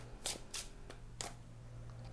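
Quiet hand shuffling of a tarot deck: about three soft clicks of the cards against each other, the last a little after a second in.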